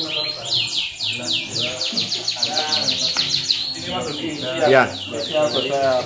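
Caged Yorkshire canaries singing: a long run of quick, high falling notes repeated about four to five times a second.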